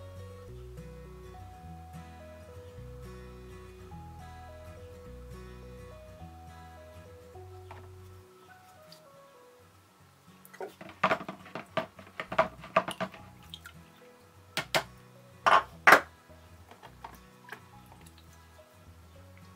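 Light background music for the first half. Then, from about ten seconds in, a run of water sloshing, dripping and clattering as cold-blued steel parts are rinsed by hand in a plastic tub of water, with two sharp knocks near the end.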